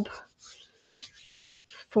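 Faint soft rubbing of hands smoothing ready-to-roll fondant icing over the sides of a cake, a brief stretch of about a second near the middle.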